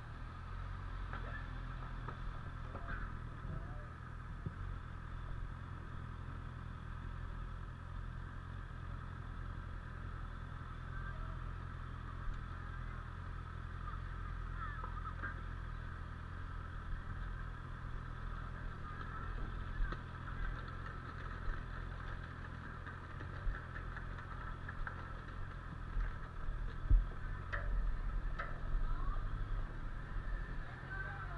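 Motorcycle engine idling and pulling away at low speed, a steady low drone throughout, with a few sharp knocks near the end.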